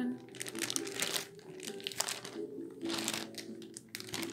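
Thin plastic bag of cut vegetables crinkling in several short rustles as it is handled, over soft background music.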